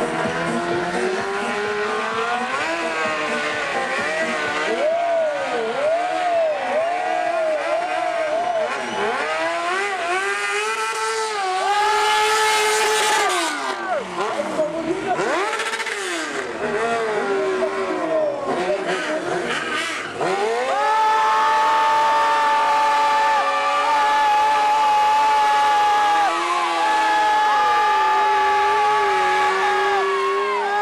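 Sport motorcycle engine revving hard up and down in quick swoops during stunt riding. From about two-thirds of the way through it holds a steady high pitch as the rear tyre is spun in a burnout.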